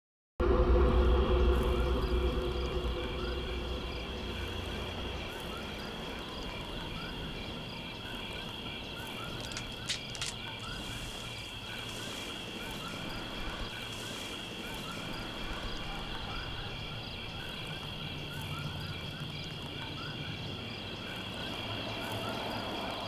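Night-time forest ambience of insects chirring steadily with a regular pulse and frogs calling, over a low rumble that is loudest at the start and fades within the first few seconds. A brief cluster of clicks comes about halfway through.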